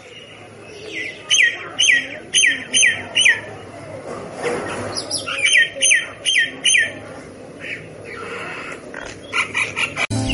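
Myna calling: runs of short, sharp notes that each slide downward, about two a second, with a harsher, noisier call between the runs and more quick notes near the end.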